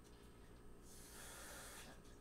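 Near silence with a steady low room hum, broken about a second in by one soft hiss of breath lasting about a second.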